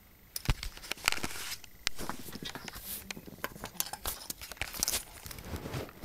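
Close handling noise: repeated clicks, knocks and rustling as a Molex-to-6-pin power cable and a graphics card are moved about on a desk.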